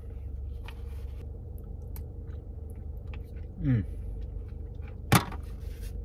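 A person chewing a mouthful of food inside a car, with small scattered mouth clicks over a low steady hum. There is a short appreciative 'mm' a little past halfway, and a single sharp click about five seconds in.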